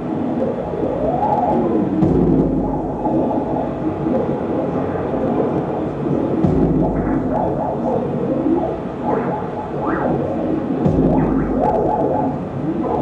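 Live experimental electronic music played on knob-controlled effects gear: a dense drone of sliding tones that glide up and down, with three low rumbling swells.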